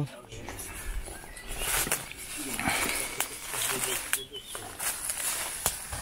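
Footsteps and rustling in dry leaf litter, with a few sharp clicks scattered through.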